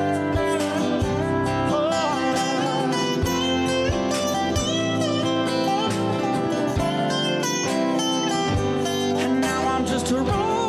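Acoustic country band playing an instrumental passage: lap steel guitar with acoustic guitar, keyboard and shakers over a cajon.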